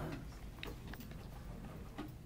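A few faint clicks and small knocks of equipment being handled while someone rummages for a module among synth gear, over a low steady room hum.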